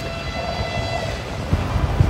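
Freight train passing at speed, a steady low rumble with faint steady high-pitched tones over it.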